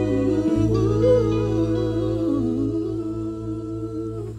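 Closing bars of a song: wordless hummed vocal harmonies held over sustained electric bass and guitar notes, slowly fading out.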